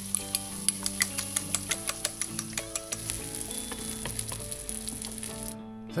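Beaten egg and ham frying in a hot pan: a steady sizzle full of small crackles and pops. It cuts off abruptly about five and a half seconds in.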